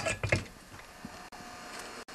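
The end of a spoken word, then quiet room tone with a faint steady hum and one light click about a second in.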